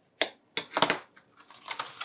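Paper and card handling: a few sharp clicks and crackles in the first second, then a softer rustle as a hand-sewn book block with a freshly glued cardstock spine wrap is picked up and opened. A bone folder is set down on the cutting mat.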